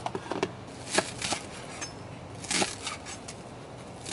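Kitchen knife chopping parsley on a wooden cutting board: a few scattered knocks.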